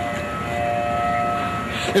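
Outdoor tornado warning siren sounding a steady, unchanging pitch, its level fading and coming back as it sounds, over a low rushing noise.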